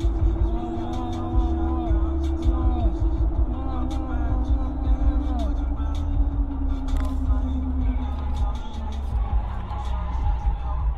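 Low road and engine rumble inside a vehicle cruising on a highway, with a steady hum that slides slowly lower and fades about eight seconds in. Music with a melody plays over it.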